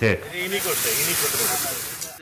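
A steady high hiss, with faint voices underneath; it sets in about half a second in.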